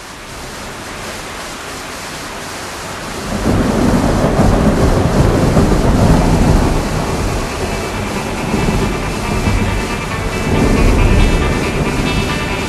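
A thunderstorm effect at the start of a gothic rock track: steady rain hiss fading up, a long roll of thunder beginning about three seconds in, and another rumble near the end as sustained musical tones start to come in.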